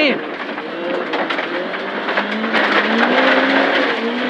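A Proton Satria 1400S rally car's engine heard from inside the cabin, with gravel hissing and rattling under the car. About two seconds in, the revs start to climb as the car accelerates.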